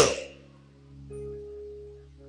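Soft background music under a sermon: a sustained chord of held notes, with a higher note entering about a second in. The end of the preacher's spoken phrase trails off at the start.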